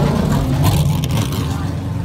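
A car engine running steadily near idle, a low even drone.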